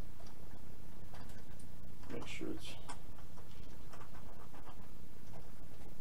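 Light clicks and ticks from a small Phillips screwdriver turning the propeller screw down into the motor's prop adapter on a micro RC plane, over a steady low hum. A short murmur of voice comes about two seconds in.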